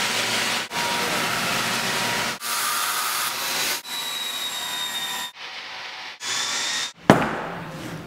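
Circular saw cutting through hardwood floorboards, heard as several short clips that start and stop abruptly one after another. Near the end comes a single sharp hammer knock.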